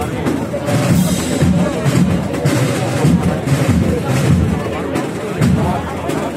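A wind band playing a march with drum beats, over the chatter of a crowd.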